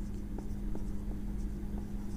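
Marker pen writing on a whiteboard: faint scratching with light ticks of the tip as a word is written, over a steady low hum.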